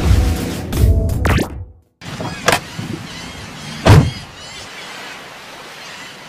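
Logo jingle music put through a 'G Major' audio effect. A bass-heavy cue ends with a rising sweep and cuts out for a moment. Then a second logo's sound starts, with two loud hits about a second and a half apart over a steady hiss.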